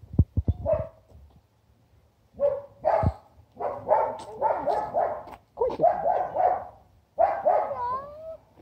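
A pet animal calling repeatedly in short groups of calls, some of them sliding up in pitch, starting about two seconds in.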